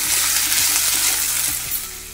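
Diced carrots and potatoes sizzling in hot oil in a wok just after the carrots are tipped in, stirred with a wooden spatula; the loud sizzle eases toward the end.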